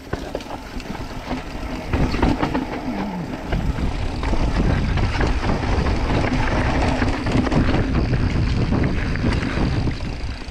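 Wind rushing over the microphone and the rattle of a mountain bike riding fast down a dirt trail, with tyres on loose dirt and many short knocks over bumps. It grows louder about two seconds in.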